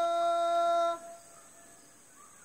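One voice from the Korowai after-hunt song holds a single long, steady sung note that stops abruptly about a second in, leaving a faint, steady high tone.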